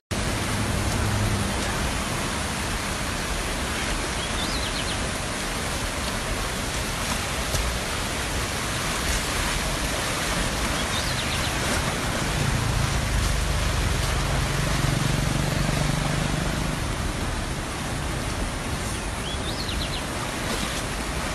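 Steady, even rushing noise of fast-flowing floodwater, with a few faint high chirps heard briefly three times.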